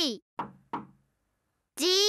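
Two quick knocks, about a third of a second apart, each with a brief ringing decay. They follow a short call that rises and falls in pitch, and a voice starts speaking near the end.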